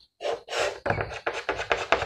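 Chalk scratching and tapping on a blackboard in a quick run of short strokes while a diagram is drawn, with a breath drawn in early on.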